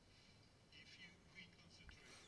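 Near silence: room tone in a pause between sentences, with a faint, indistinct voice-like murmur about a second in.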